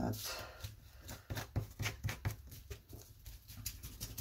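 Ink blending tool dabbing and rubbing ink onto the edge of a paper page: a quick run of soft taps and scuffs, about three or four a second.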